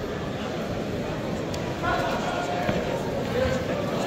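Spectator crowd chattering in a reverberant sports hall, with one raised voice calling out about halfway through.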